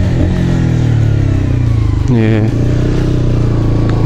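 Honda CBR125R's single-cylinder four-stroke engine running with a steady note while riding, heard from a helmet camera with road and wind noise.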